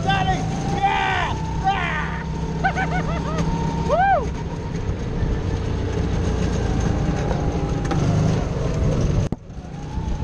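Go-kart engine running steadily under way, with a few short high-pitched squeals that rise and fall in the first four seconds. The sound cuts off suddenly about nine seconds in.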